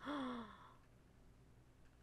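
A woman's breathy gasp of shock, a half-second 'wow' that falls in pitch, then quiet room tone.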